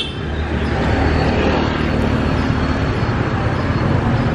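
Street traffic noise: a motor vehicle engine running steadily close by, over the general rumble of the road.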